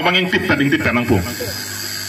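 A man's voice speaking into a microphone through a public-address system, then a short pause near the end where only a steady hiss remains.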